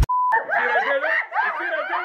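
A short, steady beep lasting about a quarter second, then several people laughing together.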